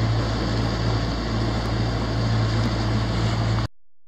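Steady low hum of a boat's motor running, with an even rushing noise over it; it stops abruptly near the end.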